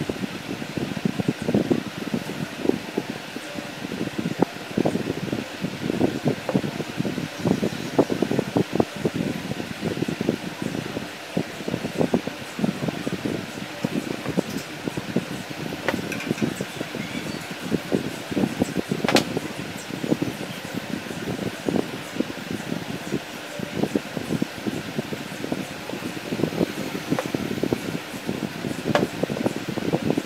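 Frequent light knocks, taps and rustles of plastic pipe pieces and lens parts being handled on a table, over a steady fan-like hum. One sharper click comes about two-thirds of the way through.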